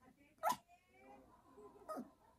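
Yorkshire terrier giving short, sharp barks, once about half a second in and again near the end. These are demand barks, urging her owner to come to bed.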